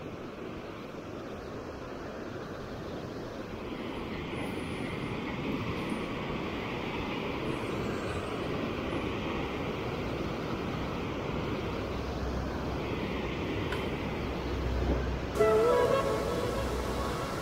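Fast white water rushing and churning where a strong outflow pours into the river: a steady rushing noise that grows a little fuller a few seconds in. Music starts just before the end.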